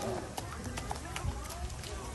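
Quick light clicks and taps of beavers' feet and claws on wet concrete as they scurry along carrying carrots.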